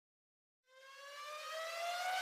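A single synthetic rising tone with overtones, fading in about two-thirds of a second in and sliding slowly upward in pitch as it grows louder: a riser sound effect.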